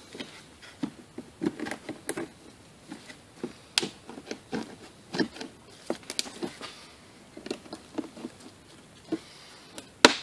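Irregular small clicks and taps of pliers working the little metal retaining tabs of a door window felt strip, bending them straight.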